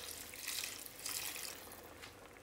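Water poured from a jug into a pan of potatoes and cauliflower in a thick masala sauce, splashing onto the vegetables, easing off near the end as the jug is lifted.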